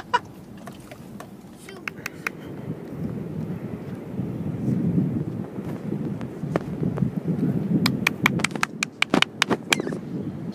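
Wind rumbling on the microphone, louder from about three seconds in, with scattered sharp clicks.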